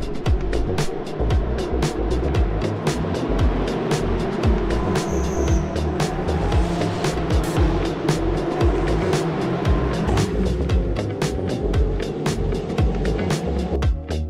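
Background music with a steady beat, mixed with the engines of Ferrari Challenge race cars driving off down the start/finish straight.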